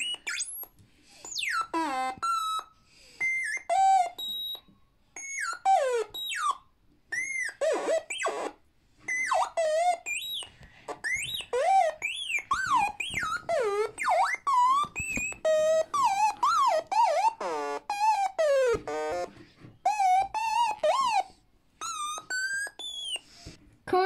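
littleBits synthesizer circuit played through its small speaker cube: a long run of short electronic notes that slide up and down in pitch with a wobble, their pitch changed by a hand moving over the proximity sensor bit.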